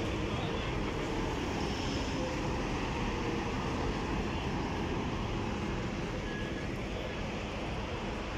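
Steady outdoor din of a crowd and vehicles: distant voices mixed into a constant rumble, with no single sound standing out.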